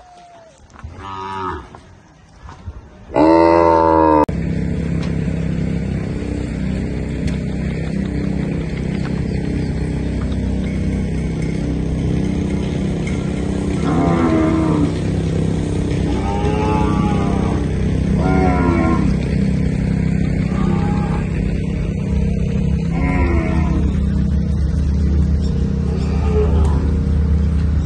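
Gyr cattle mooing: a short call about a second in, then a loud moo at about three seconds. Steady background music comes in suddenly just after, and several more moos sound over it.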